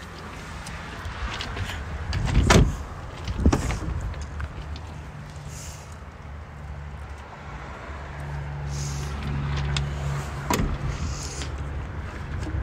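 A low steady hum with several sharp knocks, the loudest about two and a half seconds in, another a second later and one more near ten and a half seconds. The knocks are from a car's doors and fittings being handled.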